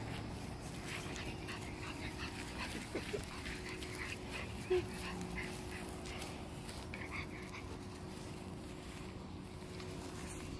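Pug puppy giving two brief, faint whimpers, about three and five seconds in, amid soft scuffling in the grass and a faint steady hum.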